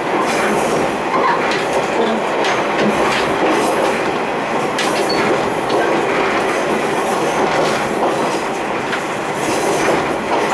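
Running noise at the coupled ends of two old KiHa 28 and KiHa 52 diesel railcars under way: the steel diamond-plate gangway plates rattle and clank against each other over steady wheel and rail noise.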